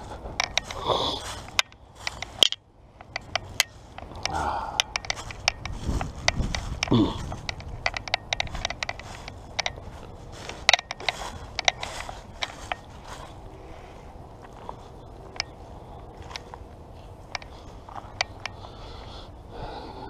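Footsteps crunching and crackling through dry fallen leaves, as irregular sharp clicks and scrapes.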